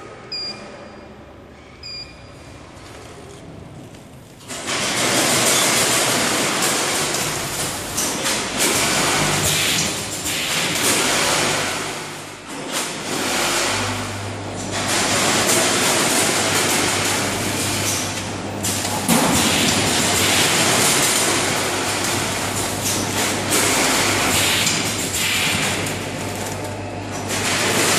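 Bean-packing line with a 14-head weigher and vertical bagging machine: two short beeps from the control touchscreen, then about four and a half seconds in the machine starts and runs with a loud, steady mechanical noise. A low hum joins about halfway through.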